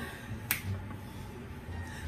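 A single sharp snap from a hand about half a second in, over faint low background sound.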